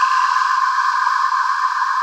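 The held tail of an electronic logo sting: a steady, airy synthesized tone with no bass, sustained without change.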